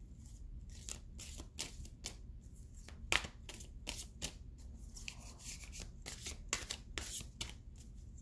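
Tarot deck being shuffled by hand: a quick, irregular run of crisp clicks of cards against each other.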